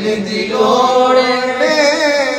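A man singing a devotional Punjabi naat in long, held, ornamented lines whose pitch wavers up and down, growing louder about half a second in.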